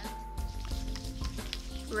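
Garnier face cleanser being rubbed between the hands, an irregular soft wet rubbing, over steady background music.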